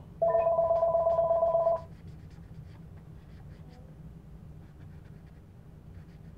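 Telephone ringing: one loud warbling two-tone ring lasting about a second and a half, just after the start. Afterwards a marker scratches faintly on paper.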